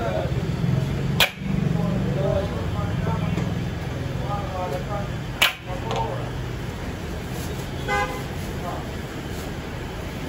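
Busy street ambience with vehicles running and voices in the background, a short car horn toot about eight seconds in, and two sharp knocks, about a second and about five seconds in.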